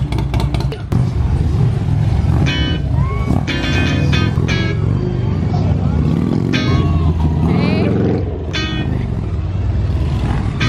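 Heavy cruiser and touring motorcycles riding slowly past one after another, their engines giving a steady deep rumble, with music and voices over it.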